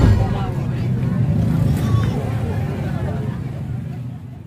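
Voices of a street crowd over the steady low running of motor scooters and motorcycles.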